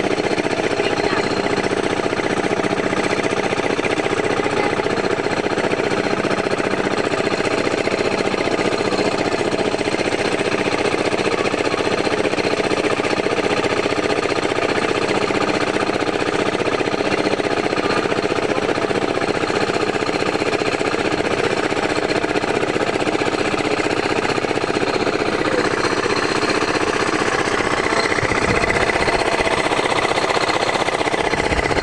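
Small engine running steadily at an even speed, with a fast regular beat.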